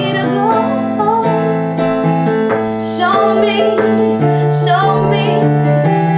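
A woman singing a song over long, held keyboard chords.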